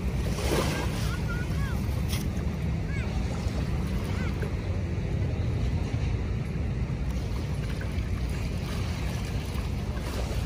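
Steady wind rumble on the microphone over shallow, lapping bay water at the shoreline. There is a brief rush of noise about half a second in and a few faint high chirps in the first few seconds.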